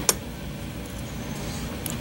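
Steady low room hum with a sharp click just after the start and a faint one near the end: light metal contact from a T-handle hex driver seated in the shift cam stopper bolt on an aluminium transmission case.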